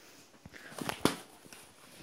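A few faint knocks and rustles in the first half, set against quiet room noise.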